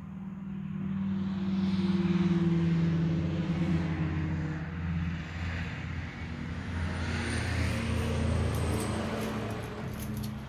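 A heavy road vehicle passing, heard from inside a house: a low engine rumble swells over the first few seconds, eases, then holds before fading near the end.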